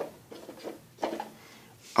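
Plastic cups being handled and set down on a table: a light knock at the start and another about a second in, with faint rubbing between.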